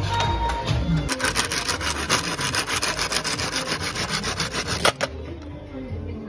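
A hand tool rasping rhythmically against a green bamboo pole, several fast strokes a second, stopping abruptly with a sharp knock about five seconds in.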